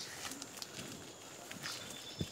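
Faint footsteps and rustling of people moving through tall grass and pineapple plants, a few soft scattered clicks.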